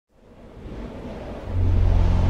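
Low rumbling drone from a film soundtrack, fading in from silence and swelling until it turns loud and steady about one and a half seconds in.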